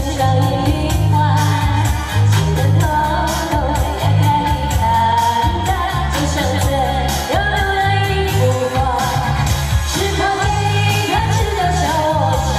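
A woman singing a pop song live into a microphone over loud amplified backing music with a steady, heavy bass beat and regular hi-hat ticks.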